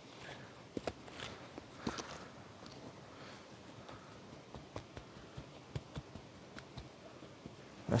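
Hands working through the ash in a fire pit: scattered light clicks, scrapes and rustles, irregular and close, with a slightly louder knock about two seconds in.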